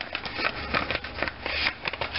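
Paper rustling and crinkling in many quick, irregular crackles as folded sheets are pulled from an opened envelope and handled.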